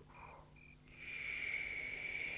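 Crickets chirping as night ambience: short high chirps repeating about three times a second. About a second in they merge into a louder, continuous high trill.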